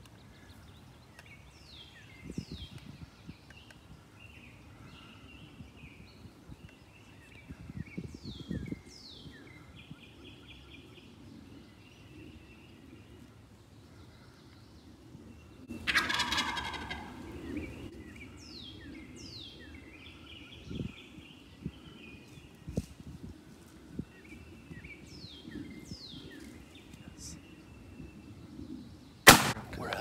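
A wild turkey gobbler gobbles once, loud, about halfway through, a rattling call falling in pitch, while small songbirds chirp throughout. Near the end a single shotgun shot cracks out, the loudest sound.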